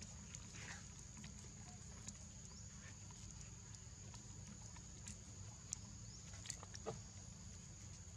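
Faint outdoor background: a steady low rumble with a thin, steady high-pitched tone over it, and a few soft, sharp clicks scattered through it.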